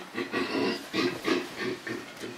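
A person's voice making a run of short vocal sounds with no clear words.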